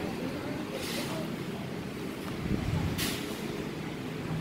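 Low, steady rumble of motor vehicle noise, with two brief sharp scuffs, one about a second in and one near three seconds.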